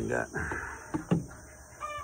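Chickens clucking and squawking in a coop, in short separate calls, with a brief high call near the end.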